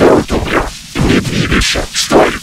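A cartoon voice line run through heavy audio effects and distorted beyond understanding: harsh, noisy bursts a few times a second with no words made out.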